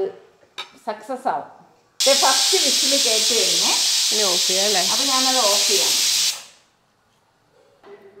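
Stainless-steel pressure cooker venting steam: a loud, steady hiss that starts abruptly about two seconds in and dies away about four seconds later. Women's voices talk over it.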